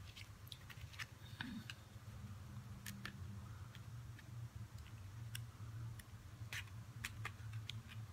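Pages of a sticker pad being lifted and flipped: faint, irregular crisp paper clicks and rustles, over a low steady hum.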